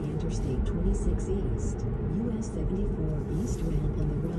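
Steady low road and tyre rumble inside the cabin of a Tesla electric car cruising at about 35 mph, with a few faint brief high ticks.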